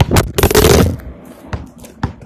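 A mobile phone dropped and clattering on hard ground: two sharp knocks, a loud tumbling scrape for about half a second, then a few lighter knocks as it settles. The fall scraped and broke the phone.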